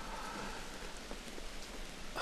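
Faint, steady background hiss of outdoor ambience with a few soft ticks, during a pause in the conversation.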